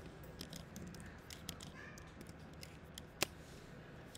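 Faint scattered clicks from desk input while working at the computer, with one sharper click about three seconds in, over a low room hiss.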